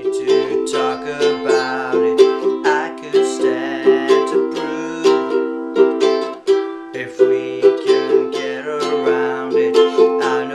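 A ukulele strummed in a steady rhythm, with a man singing along.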